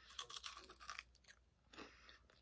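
Faint crunching as a Ferrero Rocher is bitten and chewed, its crisp wafer shell cracking, mostly in the first second with another crunch near the end.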